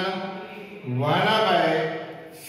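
A man's voice holding one long, drawn-out syllable in a sing-song tone, starting about a second in after a brief lull.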